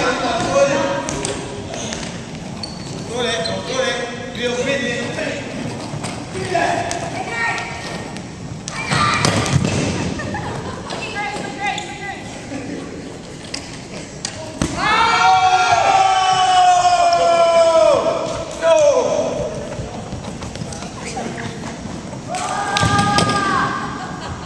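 Voices and shouts of a group playing scooter-board hockey, echoing in a large gymnasium, with thuds of the ball and boards on the hardwood floor, the loudest about nine to ten seconds in. About fifteen seconds in comes one long high-pitched cry, falling at its end, and a shorter one near the end.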